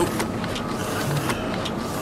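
A steady hiss with scattered, irregular clicks: a mechanical clatter.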